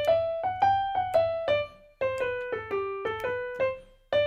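Digital piano playing a major scale up and down in a swing feel, one note at a time. It comes as two short phrases, the second starting about two seconds in.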